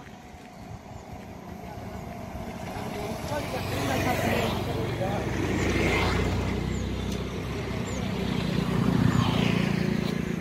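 A motor vehicle's engine running, growing louder over the first few seconds as it nears and rising again near the end, with the hiss of its passing over it.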